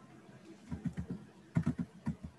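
Computer keyboard typing in two short irregular clusters of taps, picked up by a video-call microphone.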